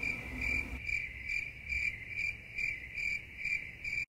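Cricket chirping in an even rhythm, about two to three chirps a second over a steady high trill.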